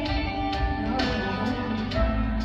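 Recorded song playing for the dance, a short instrumental passage with guitar between sung lines, new chords struck about once a second.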